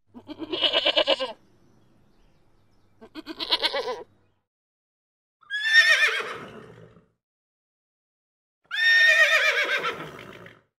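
A goat bleats twice, each call about a second long and wavering. Then a horse whinnies twice, each call falling in pitch, the second starting near the end and running on.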